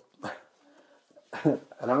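A man speaking Czech in a lecture pauses, then starts the name "Ráma" about a second and a half in. A brief sound falling in pitch comes just after the pause begins.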